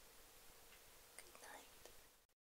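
Near silence: faint steady hiss with a brief, faint whisper about one and a half seconds in.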